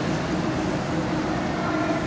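Steady rumbling noise in a large, echoing indoor velodrome: track-bike tyres running on the wooden boards.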